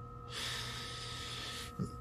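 A person's breath close to the microphone: one long exhale lasting about a second and a half, followed by a short voiced sound near the end, over a faint steady whine.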